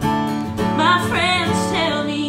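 A woman singing a country song to her own strummed acoustic guitar, the voice gliding between notes over steady chords.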